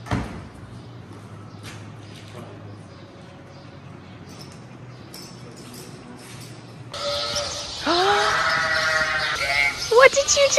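Faint shop background with a single sharp knock at the start. About seven seconds in, barn noise starts abruptly and a sheep lets out a long bleat.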